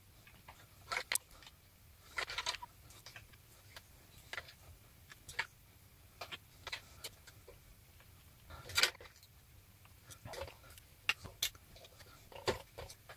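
Plastic Lego minifigures being handled and pressed onto the studs of Lego plates: a dozen or so scattered sharp clicks and taps at irregular intervals, the loudest about nine seconds in.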